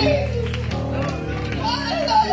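Live church praise music: a keyboard holds steady chords while voices call out and sing over it.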